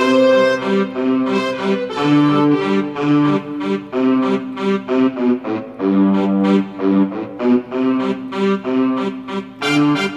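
Yamaha portable keyboard played as a duet: a melody of held notes over a lower accompaniment, the notes starting in an even rhythm.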